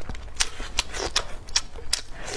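Close-miked chewing of food, a steady row of sharp, wet mouth clicks about two or three a second.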